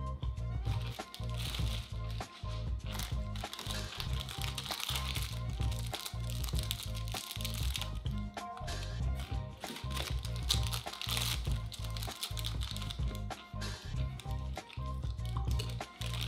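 Background music with a steady beat, over the repeated crinkling of plastic ice cream bar wrappers being torn open and unwrapped.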